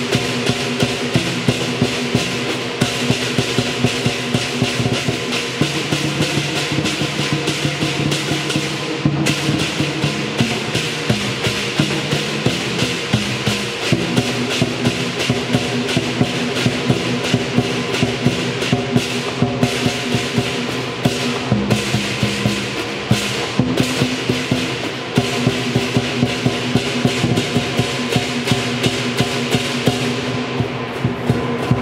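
Chinese lion dance percussion ensemble playing: a set of large Chinese drums beaten in a steady rhythm, with a group of hand cymbals clashing and a gong. The cymbals' wash runs over the drum strikes throughout, with a few brief breaks in it.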